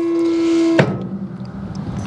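Battery-powered hydraulic pump of a Weberlane steel power-tilt trailer running with a steady whine as it tilts the deck up; about a second in there is a knock and it carries on at a lower, rougher note.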